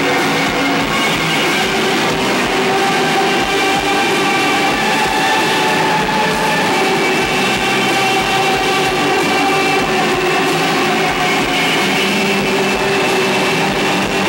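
A live rock band playing a loud, dense passage of distorted guitars and bass, with several long held tones over a steady wash of noise.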